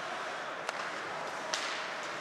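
Ice hockey game sound under a steady arena background noise: one sharp crack about a third of the way in, like a puck striking a stick or the boards, and a brief scraping hiss later on, like skate blades on the ice.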